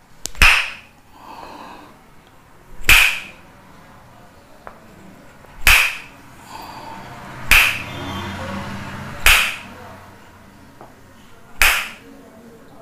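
Tok sen massage: a wooden mallet striking a wooden stick held against the neck, giving sharp wooden knocks with a brief ring. Six strikes, roughly every two seconds.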